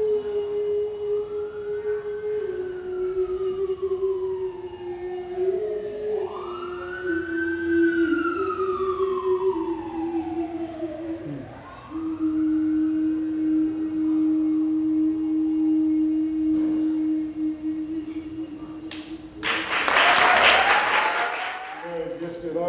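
A woman sings a slow line into a microphone, holding long notes that step down in pitch, the last one for about seven seconds. Behind her an emergency siren wails up and down. About two seconds before the end, loud applause breaks out.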